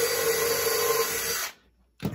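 Cordless drill running steadily at speed as an eighth-inch bit drills through a tin can into a wooden stick, stopping suddenly about a second and a half in.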